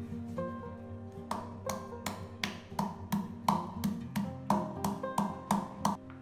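A wooden pestle pounding garlic cloves in a small stainless steel bowl: a run of about three sharp strikes a second, starting about a second in, each with a brief metallic ring. Guitar background music plays throughout.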